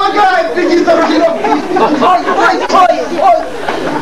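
Several voices talking at once, indistinct chatter with no clear words.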